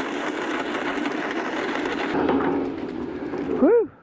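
Walk-behind drop spreader rattling steadily as it is pushed across the lawn, its wheels and agitator turning while it drops milky spore granules. It is cut off by a short pitched call near the end.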